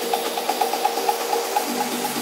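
House-style dance music from a live DJ mix, playing with no deep bass. A quick run of repeated high notes, about eight a second, comes in the first second.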